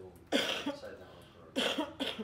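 A person coughing once, then a short laugh near the end.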